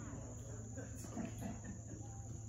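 Steady high-pitched chirring of insects, with faint murmuring and shuffling from a small crowd and a low steady hum underneath.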